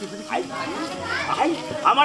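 A performer's voice delivering spoken lines in Bengali, with a low steady hum coming in about a second in.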